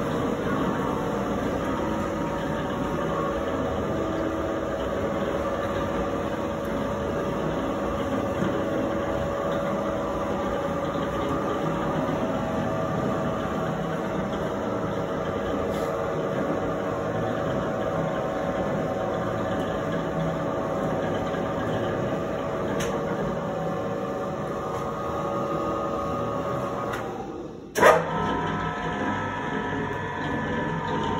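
L4-KhT2V spiral dough mixer running empty: steady hum of its electric motor and V-belt drive turning the large top pulley. Near the end the sound dips, there is one sharp clack, and the machine carries on with a higher steady tone.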